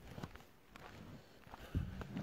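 Faint footsteps on stony, muddy ground: a few soft, scattered steps, with a somewhat louder low thud near the end.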